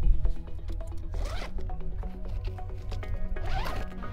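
A zipper on the rooftop tent's canvas is pulled in two strokes, about a second in and near the end. A thump comes at the start as a foot lands on the timber deck lid. Background music runs underneath.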